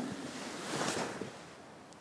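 Soft rustle of a cotton karate gi rubbing near a clip-on microphone as the arms sweep slowly through a block, swelling a little about a second in.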